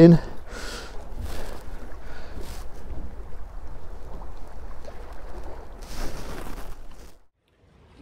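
Wind rumbling on the microphone over sea noise around a small boat, with a few short noisy rushes about half a second in, around two seconds in and about six seconds in. The sound cuts off suddenly near the end.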